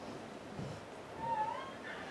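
A single short, high-pitched cry that rises and falls in pitch, heard once past the middle of a quiet, hushed room.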